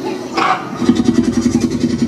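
Raptor figure's growl played through its sound system, a low rattling purr that starts about a second in and pulses evenly, after a short sharp call or snort.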